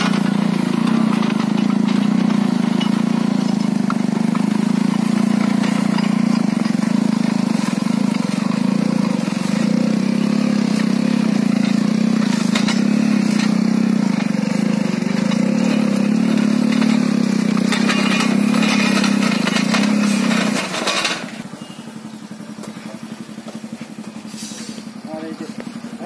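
Motorcycle engine running steadily under load while driving a rear-mounted rotary tiller through the soil, working a little tight because the soil is full of stones. About 21 seconds in the sound drops sharply and stays much quieter.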